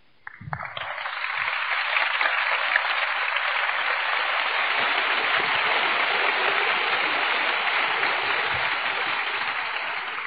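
Audience applauding a finished speech, starting about half a second in, building over the first couple of seconds, then holding steady and easing slightly near the end.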